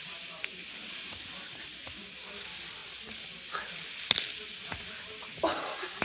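Steady scraping hiss of a blanket sliding along the floor as it is dragged with a rider on it, with a sharp knock about four seconds in.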